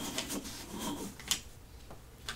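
Soft handling noise at a desk: light rubbing with a few scattered short clicks and scrapes, the sharpest about a second and a half in.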